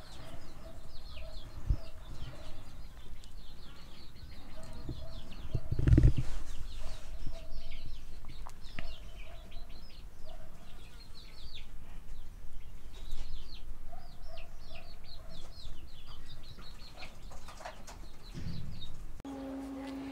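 Baby chickens peeping: many short, high, falling peeps in quick succession, with one low thump about six seconds in.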